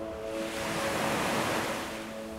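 A wave surging in. Its rush builds about a third of a second in, peaks, and eases off near the end. The held piano notes fade away beneath it.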